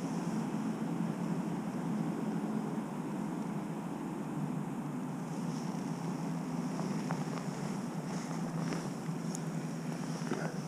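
Steady low background rumble, with a few faint light ticks in the last few seconds.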